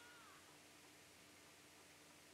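Near silence: faint room hiss and a low steady hum, with one brief faint high call that rises and falls near the start.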